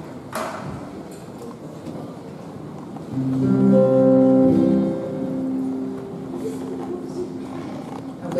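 A single sharp knock about half a second in, then a chord on an acoustic guitar about three seconds in that rings out, with the notes shifting and fading over the next few seconds.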